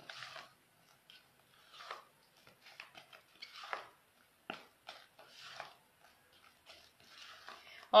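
A spatula stirring and scraping whipped cream in a plastic bowl, mixing colour into it: soft, irregular scrapes and squelches with a sharp click about four and a half seconds in.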